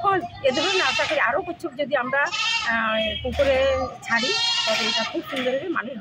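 A woman speaking in Bengali.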